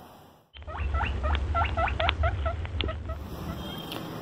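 A quick run of about fifteen short, high squeaks, each falling in pitch, about five a second, starting after a brief silence and stopping about three seconds in. A low steady hum runs underneath.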